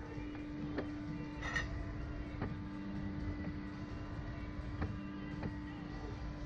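A steady low hum with a few scattered light clicks over a low rumble.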